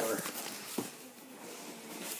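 Flaps of a cardboard shipping box being pulled open by hand: faint rustling of cardboard, with one sharp click just under a second in.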